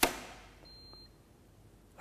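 A 30 mA RCD snapping off with a sharp click as the tester's test current trips it, in 26 milliseconds, well inside the 200 ms limit, so the device is working properly. About half a second later the RCD tester gives a short high beep.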